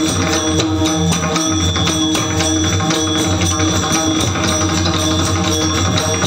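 Warkari bhajan music: small brass hand cymbals (tal) ring in a steady rhythm with pakhawaj drum strokes over a held drone.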